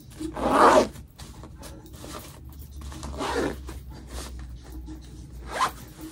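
Zipper on a fabric packing organizer being pulled shut over packed clothes in three short pulls, the first the loudest.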